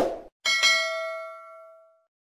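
Subscribe-button sound effect: a short click at the start, then a single notification-bell ding about half a second in that rings and fades over about a second and a half.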